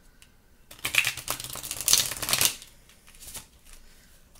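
A deck of oracle cards being shuffled by hand: a dense run of quick card flutters lasting about two seconds, starting just under a second in, followed by a few softer flicks.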